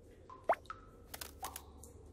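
Cartoon sound effects: a quick rising plop about half a second in, with short tones around it, then a few light clicks, over a faint low hum.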